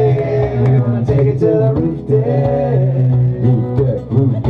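Live acoustic band playing: strummed acoustic guitars over a steady low bass line, with drum hits.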